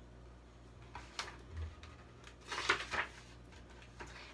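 Picture-book pages being turned and handled: a short paper rustle about a second in, then a longer, louder rustle around the middle, over a faint steady room hum.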